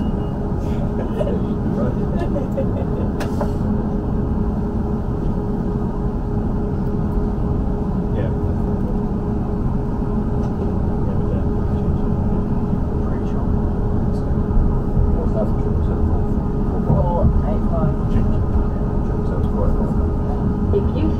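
Cabin noise inside a Class 444 Desiro electric multiple unit pulling away from a station: a steady low rumble from the running gear with a constant hum, and a few light clicks and rattles.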